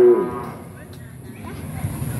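The tail of a man's long drawn-out spoken vowel that fades within the first fraction of a second, followed by a quieter stretch of open-air background noise.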